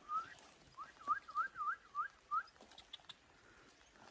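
Someone whistling: one rising note, then five short up-sweeping notes in quick succession.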